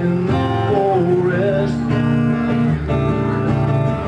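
Acoustic guitar strummed in chords, a steady song accompaniment between sung lines.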